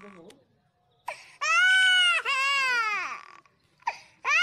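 A shrill, high-pitched crying wail: two long drawn-out cries, each rising and then falling in pitch, starting about a second and a half in.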